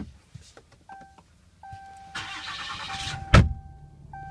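Truck start-up inside the cab of a 2014 Ram 2500 with the 6.4-litre Hemi V8. A dashboard chime sounds, then a steady warning tone holds while the starter cranks for about a second. The engine fires with a sharp thump and settles into a low idle.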